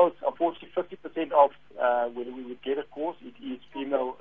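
Speech only: one person talking steadily without a break, with no other sound.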